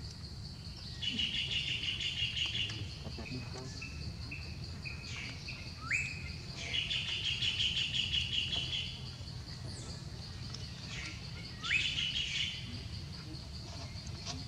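Birds chirping outdoors over a steady high, pulsing trill. There are three louder bursts of rapid chirping: about a second in, midway, and near the end. The second and third each open with a short rising note.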